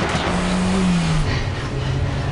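Car engine running at speed with tyre and road noise on a gravel track; the engine note drops a little about halfway through.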